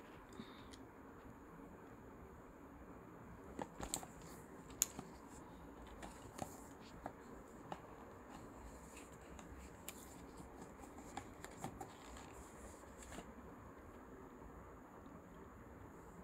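Small paperboard carton being handled and its flaps opened by hand: quiet, irregular clicks and taps, busiest about four to five seconds in, then scattered until about thirteen seconds in.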